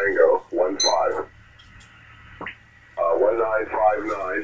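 Voices on a ham radio's single-sideband audio, thin and narrow-sounding, working through a contest exchange. They stop for about two seconds, with a single click in the pause, then start again near the end. A short high beep sounds about a second in.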